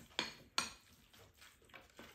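Eating utensils clicking and scraping against ceramic rice bowls: a few sharp clinks, the loudest two within the first second.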